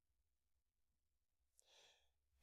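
Near silence: room tone, with a faint intake of breath near the end.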